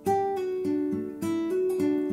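Nylon-string classical guitar fingerpicked in a steady picking pattern on a D chord. Single notes are plucked in even eighth notes and each is left ringing over the others.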